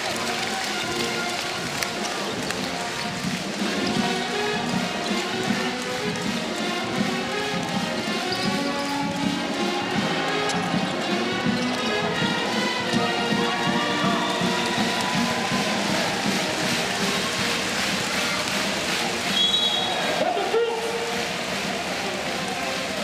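Basketball arena crowd noise with music playing over it and a ball dribbling on the hardwood court. A brief high whistle, a referee's whistle, sounds near the end.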